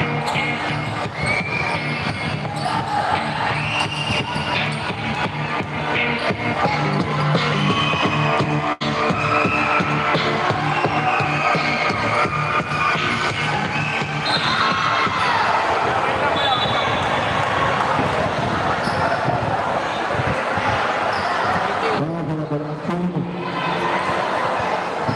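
Indoor basketball game: sneakers squeaking and a ball bouncing on the court, with music playing underneath.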